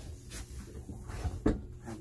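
Laminate tabletop being lifted off its loosened Lagun table mount: faint handling and rubbing, with one sharp knock about one and a half seconds in as it comes free.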